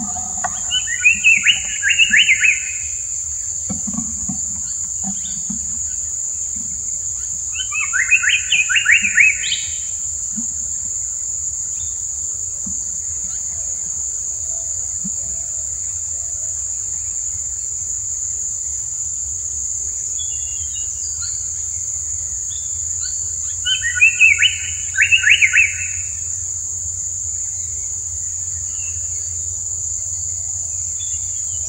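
Indian paradise flycatcher giving three harsh, rasping calls of about a second and a half each: one near the start, one about eight seconds in and one about twenty-four seconds in. A steady high-pitched insect drone runs underneath.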